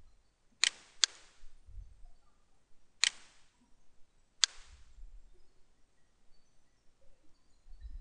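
Computer mouse clicking: a quick double click a little over half a second in, then single clicks at about three and four and a half seconds.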